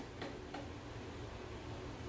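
Pencil marking screw-hole positions through the holes of a drawer slide rail: a couple of faint light ticks in the first half second, over a low steady room hum.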